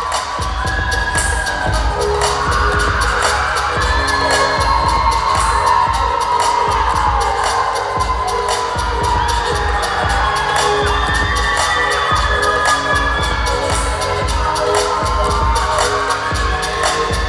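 Hip-hop dance-mix music played loud through a hall's sound system: a sung vocal line over a fast, steady beat and deep bass.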